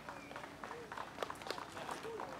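Quiet outdoor background with faint, scattered light ticks and clicks, and no clear dominant sound.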